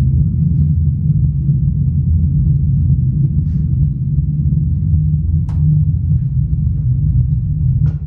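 Eros Target 3K3 15-inch subwoofer in its box playing pink noise for a frequency-response measurement, heard as a steady, even bass rumble with nothing above the low range. A faint click comes about five and a half seconds in.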